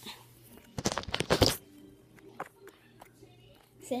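Brief rustling and handling noise, a cluster of scrapes about a second in, as the note and phone are moved, followed by a few faint clicks.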